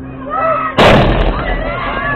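A baseball hits the backstop fence close by: one loud, sharp crash about a second in, the ball having got past the catcher. Voices are shouting around it.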